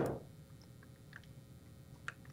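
A single short knock at the start, then a few faint, scattered clicks from a computer mouse being used.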